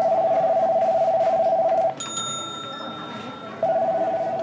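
Electronic telephone-style ring tone warbling steadily for about two seconds. It stops with a click and a bright bell-like ding that fades out, and the warbling ring starts again near the end.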